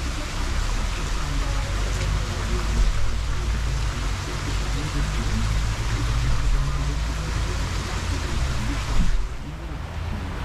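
Wind rushing over an action-camera microphone, a steady hiss over a low rumble, easing about nine seconds in.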